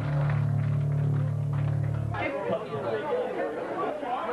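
A live band's amplified electric guitar and bass hold a final low chord that cuts off abruptly about halfway through: the end of a song. Crowd chatter and shouting follow.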